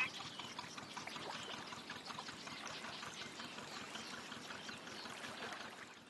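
Canal water trickling and lapping against a moving boat's hull, a steady light patter that fades out near the end.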